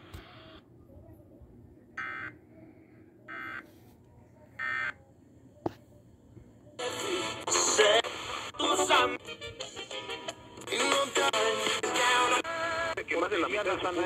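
A NOAA weather radio sends three short data bursts about a second apart, the EAS end-of-message code that closes the tornado warning. After a click, an FM radio is tuned across the dial, with snatches of music and talk from one station after another.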